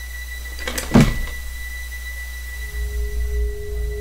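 Horror film soundtrack: a low steady rumble under a faint high steady tone, with a sudden thump about a second in and a held low note coming in near the end.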